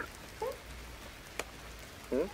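Steady patter of rain, with a brief falling cat call about half a second in and a single click near the middle as the cat paws at the cat flap.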